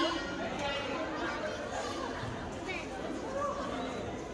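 Indistinct chatter of several people talking in a large hall.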